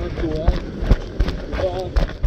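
Running footsteps thudding on beach sand, two or three steps a second, as a parasailer is pulled into take-off, with a man's voice exclaiming over them.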